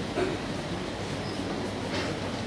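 Steady rumbling, hissing background noise of a large hall, with a brief knock about a fifth of a second in.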